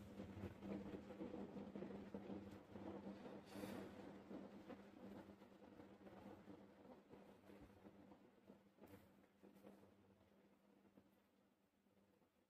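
Near silence: faint handling of wire leads and alligator clips being fitted to a small star-board LED, with a couple of faint clicks, fading away after about six seconds.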